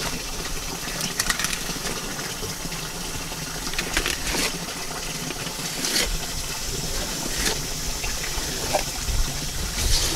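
Water running steadily from a hose over a fish-cleaning table, a constant hiss, with a few short clicks scattered through it.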